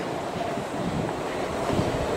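Steady low rumble of wind on the microphone over outdoor city background noise.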